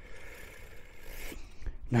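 Gloved fingers handling a small coin right at the microphone: a soft rubbing scrape for about the first second and a half.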